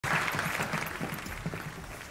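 Audience applauding, loudest at the start and dying away.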